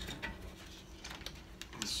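Faint scattered clicks and rubbing as a rubber tire and inner tube are handled on a small wheel rim while the inner tube's valve stem is fed toward its hole, with a short scrape near the end.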